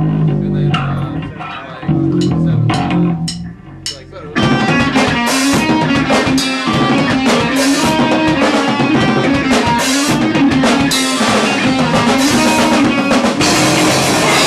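Live rock band: a low guitar riff plays alone with a few sharp taps, then about four seconds in the drum kit and electric guitars come in loud together and keep playing.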